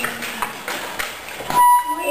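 A single steady electronic beep begins about one and a half seconds in and is the loudest sound. Before it come scattered small snips and crinkles of children's scissors cutting thin plastic sheeting.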